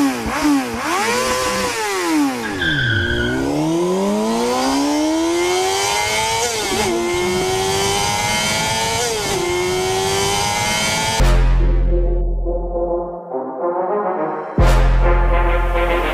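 High-revving motorcycle engine sound effect: quick rev blips, then a long rising acceleration broken twice by short dips like gear changes. About eleven seconds in it gives way to music with heavy bass, which drops out briefly and comes back near the end.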